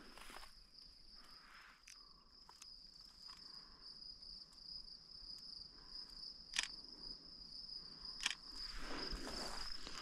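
Crickets trilling steadily in a faint, unbroken high chirr. Two sharp clicks cut in about six and a half and eight seconds in, and rustling rises near the end.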